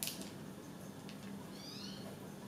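Faint soft clicks of a small metal cutter being pushed and twisted into risen yeast dough, and near the end a brief faint high-pitched wavering squeak of a few falling notes.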